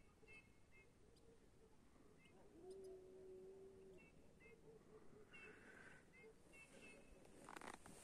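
Faint, short bird call notes repeated in small clusters, with a steady low tone lasting about a second and a half, about two and a half seconds in; otherwise near silence.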